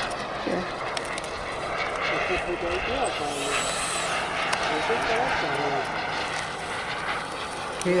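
Twin electric ducted fans of an E-flite A-10 RC jet whining at low power as it rolls out and taxis after landing, the whine rising and falling once briefly near the middle.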